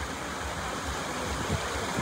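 Steady rush of a shallow river flowing over stones.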